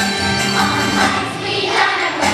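A fourth-grade children's choir singing a song together over an instrumental backing with a steady beat.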